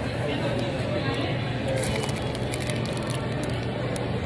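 Restaurant background sound: indistinct chatter of other diners over a steady low hum, with a few light clicks or rustles about halfway through.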